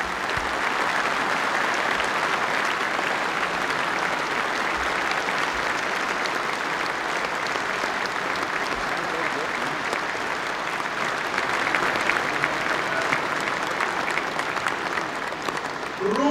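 A large audience of delegates applauding steadily in a big hall, a dense, even sound of many hands clapping.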